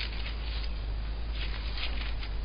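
Wind on the microphone, a steady low rumble, with a few soft rustles of thin Bible pages being turned.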